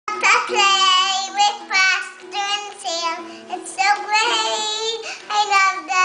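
A young girl singing several phrases with long held notes, strumming a small toy acoustic guitar whose strings ring low under her voice.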